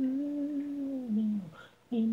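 A single voice humming an a cappella melody line. It holds one steady note that slides down in pitch about a second and a half in, then breaks off briefly before the next note starts at the end.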